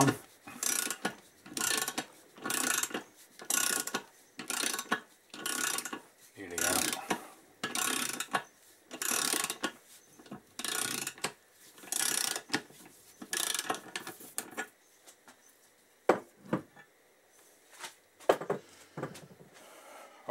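Ratchet wrench clicking in about fifteen back-and-forth strokes, roughly one a second, as it turns a stud-removal tool to unscrew the last cylinder stud from a Kawasaki Z1000J crankcase. The strokes stop about 15 seconds in, followed by a few separate knocks.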